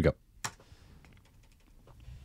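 Clicks and taps on a computer keyboard as playback of a video is started: one sharp click about half a second in, a run of faint taps, then another click near the end.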